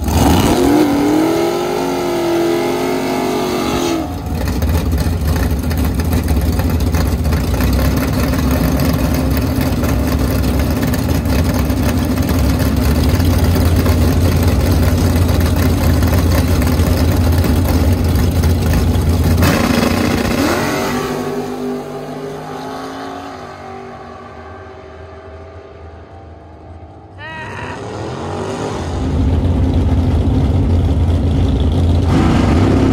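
Drag-race Chevrolet Vega engine held at high revs through a burnout: a rising rev over the first few seconds, then a long, loud, steady run. It drops off about two-thirds of the way through and goes quieter, and an engine revs up again near the end.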